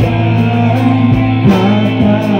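Live rock band playing through a PA: electric guitars over a sustained bass line, with regular drum beats and a man singing into a microphone.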